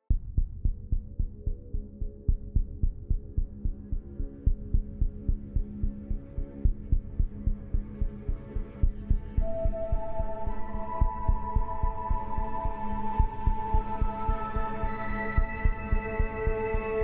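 Meditation music starting with a steady, low, heartbeat-like thumping pulse over a hum. About nine seconds in, long held melodic tones swell in above the pulse.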